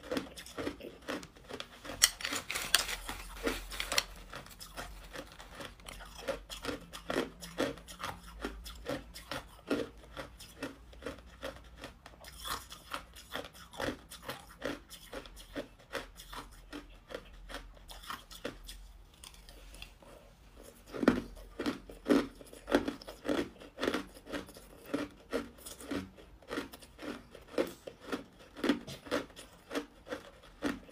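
A person chewing mouthfuls of hard clear ice: a continuous run of sharp, crisp crunches, a dense burst of them a few seconds in and another loud stretch about two-thirds of the way through.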